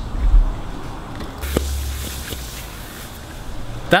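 Handling noise from a handheld camera being turned: a low rumble twice, with a single light click about one and a half seconds in and a faint hiss with it.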